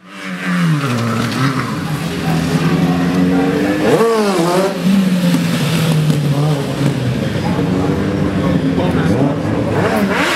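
Motorcycle engine held at high revs during a rear-tyre burnout, with a quick blip of the throttle about four seconds in and the revs climbing again near the end.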